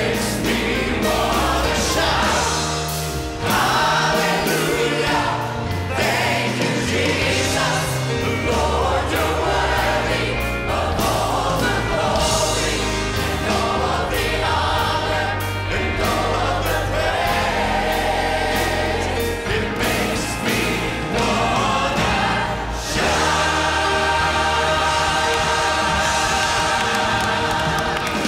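Gospel praise team and choir singing with a live band, voices over steady bass and drums. In the last few seconds the song settles on one long held chord, which then drops away.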